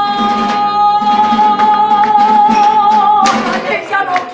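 A woman singing in flamenco style, holding one long note that bends down near the end, over a flamenco guitar strummed in a steady rhythm.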